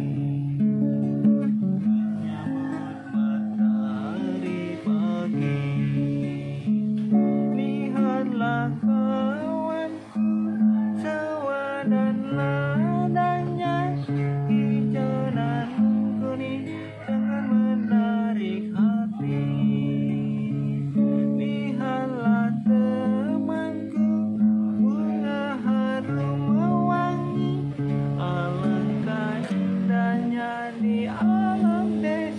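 A man singing to his own acoustic guitar, strumming chords that change every second or two under the sung melody.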